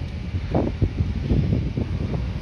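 Wind blowing across the phone's microphone: an uneven low rumble that surges and drops in quick gusts.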